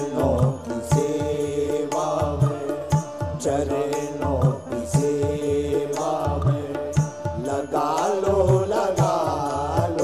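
A male voice singing a Hindu devotional chant into a microphone, with long held and bending notes over a steady rhythm of drum beats.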